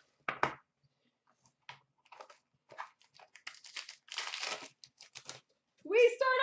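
Plastic wrapping crinkling and tearing by hand in short irregular bursts, with a longer tear about four seconds in, as a sealed box of hockey cards is unwrapped and opened.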